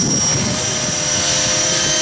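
Radio-controlled model helicopter flying overhead: rotor noise with a steady high-pitched whine.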